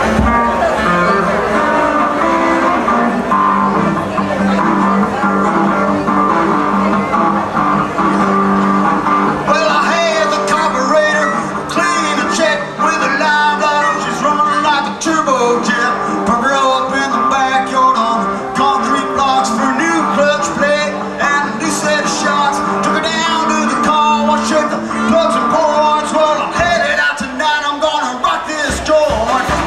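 Live band playing an electric rock number with no vocals: electric guitar, lap steel and drums. About ten seconds in, a busier, wavering lead line joins and the playing grows denser.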